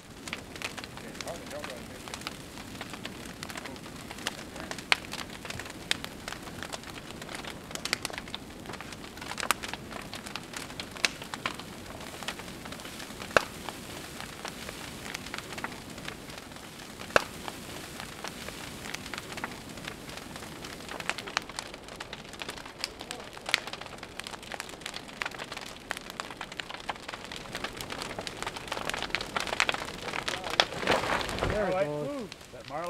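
A wooden cabin burning in full flame: a steady rush of fire with frequent sharp crackles and a few louder pops from the burning timber.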